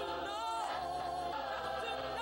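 A church choir singing a gospel song, holding notes that slide in pitch.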